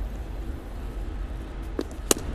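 Steady ballpark field-audio background under a broadcast: an even low rumble and hiss with no commentary, and a faint short knock near the end.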